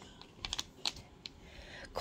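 Light clicks and ticks of empty plastic wax-melt packaging being handled: a clamshell set down and a zip bag picked up, a handful of short sharp clicks between about half a second and a second and a half in.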